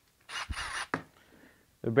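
A brief scraping rub with two light clicks as a DeWalt 12V cordless tool and its battery pack are handled in gloved hands.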